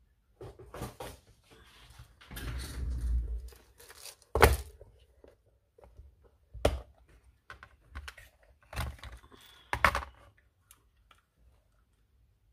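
A hard plastic compartment box and a hand-held hole punch handled on a tabletop: a rustle, then a series of sharp plastic clicks and knocks as the box is set down and its lid snapped open. The sharpest click comes about four seconds in.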